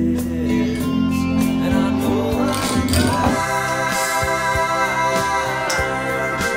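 1969 Hammond B3 organ holding sustained chords over a band recording of a pop song with guitar and vocals. About three seconds in, the organ sound grows fuller and brighter as more drawbars are pulled out.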